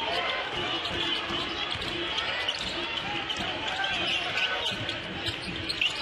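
Live basketball game sound in an arena: steady crowd noise and scattered voices, with the ball bouncing on the hardwood court.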